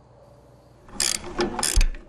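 A hand tool working on a tow truck part: two quick bursts of rapid ratcheting clicks about a second in, ending with a low thump.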